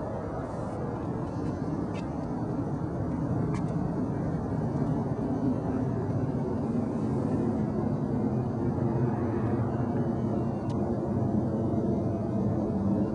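Steady low vehicle rumble that slowly grows louder, with a few faint clicks over it.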